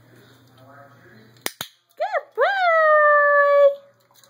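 Two sharp clicks, then a dog whining: a short rising-and-falling whine, then a longer one that rises and holds steady for over a second.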